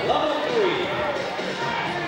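Indistinct background chatter of several voices, high children's voices among them, with occasional thumps.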